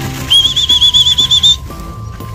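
A high warbling whistle, wavering rapidly in pitch for a little over a second, over background music.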